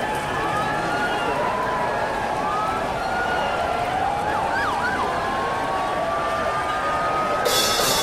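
City street soundscape: a steady roar of traffic with several sirens wailing over it, rising and falling and overlapping. A high hiss comes in near the end.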